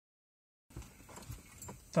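Dead silence at first, then faint scattered clicks and rustles inside a car cabin, with a man's voice starting right at the end.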